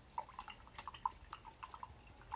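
Faint, irregular light clicks and taps, about a dozen in two seconds.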